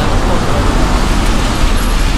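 Steady noise of road traffic on a city street, a dense even rumble of cars passing.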